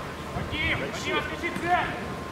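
Men's voices shouting and calling out on a football pitch during play, with several raised calls from about half a second in.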